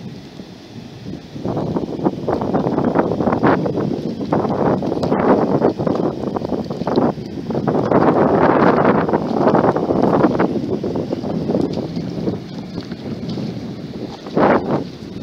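Wind buffeting the microphone in uneven gusts, loudest about eight to ten seconds in.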